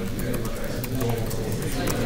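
Hubbub of many people talking at once in small groups, with no single voice standing out. Light clicks of keyboard typing sound over it.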